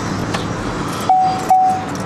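Steady outdoor traffic and wind noise coming in through an open car window. About a second in, two short steady beeps sound one right after the other.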